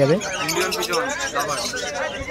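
A cage of zebra finches calling: many short, high chirps overlapping one another in a busy chorus.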